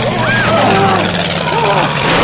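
People screaming and crying out over the steady loud roar of a military cargo plane's hold as it falls. The cries waver and swoop in pitch, the highest one about a quarter of a second in.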